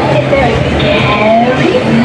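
Busy street ambience: people's voices mixed with a car going by.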